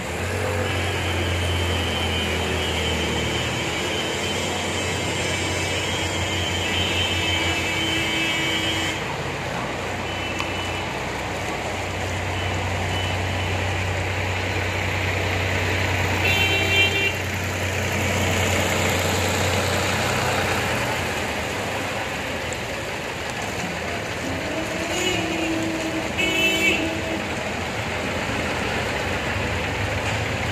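Traffic driving through a flooded street: motor vehicle engines running under a steady wash of noise, with short horn toots about halfway through and again near the end.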